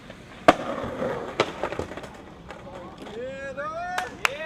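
Skateboard sounds: a sharp board impact about half a second in and two lighter knocks about a second later, over the rumble of rolling wheels. A person's voice calls out near the end.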